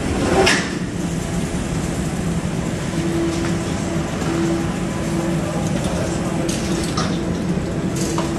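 Steady, echoing background noise of an underground bicycle parking hall, with a sharp knock about half a second in. A steady hum comes in about three seconds in, with a few faint clicks near the end.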